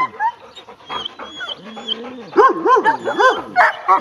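A dog whining and crying: a drawn-out whine a little over a second in, then a quick run of four or five rising-and-falling cries near the end.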